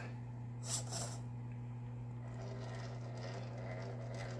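Quiet room tone with a steady low hum, and a faint brief rustle about a second in.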